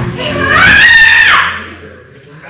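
A woman screaming: one long high scream that rises, holds and then falls away, ending about a second and a half in.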